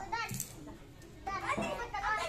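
Young children's high-pitched voices talking and calling out, with a short lull in the middle.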